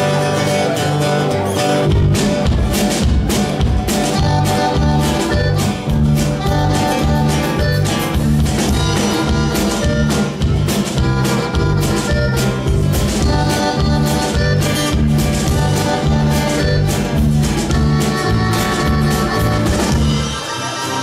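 Live conjunto band playing the opening of a song: accordion, acoustic guitars, electric bass and drums. The bass and drums come in about two seconds in, then the band keeps a steady beat.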